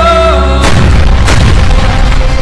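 Dramatic film soundtrack: a held musical note dies away, then two heavy boom hits land about two-thirds of a second apart over a low drone.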